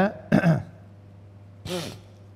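A man's brief spoken syllable, then after a pause a short, breathy throat-clearing.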